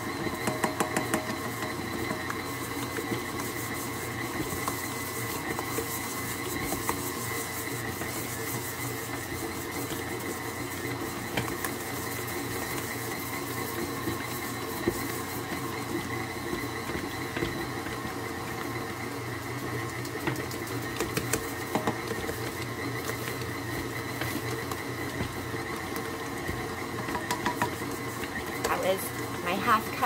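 KitchenAid tilt-head stand mixer running steadily on speed 2, its dough hook kneading stiff pizza dough: an even motor hum and whine, with a few light knocks now and then.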